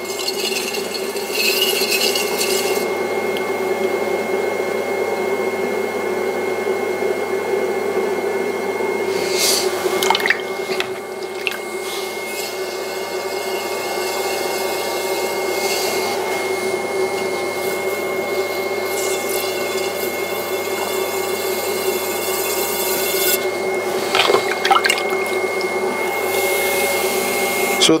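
Wet clay being pulled up on a spinning electric potter's wheel: hands and a sponge rubbing steadily on the wet clay wall during the first lift. Under it runs a steady high whine from the running wheel.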